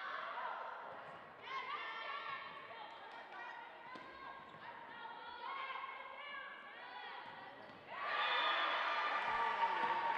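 Indoor volleyball rally: the ball being hit back and forth amid players' calls, with gym echo. About eight seconds in, a loud burst of cheering and shouting breaks out as the point is won with a kill.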